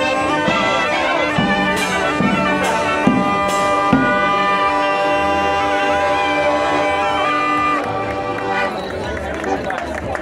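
Zampogna bagpipe playing a folk tune over its steady drone, with a reed pipe and bass-drum beats and a few cymbal crashes. The piping stops about eight seconds in, leaving crowd chatter.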